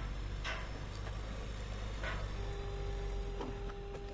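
Yangwang U8 electric SUV crawling over a steel arch-bridge hump under hill assist, its electric motors driving the wheels with no pedal input: a low steady hum with a few faint clicks. A steady whine comes in about two and a half seconds in.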